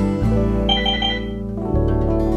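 Gentle background music with held notes; a little under a second in, three quick high chiming notes sound, and a new chord comes in near the end.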